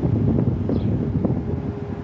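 Wind buffeting the microphone, a low irregular rumble.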